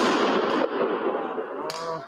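A loud explosion going off at the start, its echoing noise dying away slowly over about two seconds.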